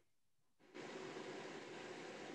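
Dead silence, then from about three-quarters of a second in a faint, steady hiss of room noise from an open microphone.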